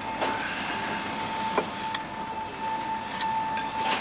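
Building-site background noise: a steady hum with a constant high tone running through it, and a single sharp knock about one and a half seconds in.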